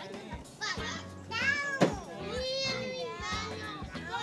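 A group of young children's voices calling out and chattering in high-pitched tones, with one sharp knock about two seconds in.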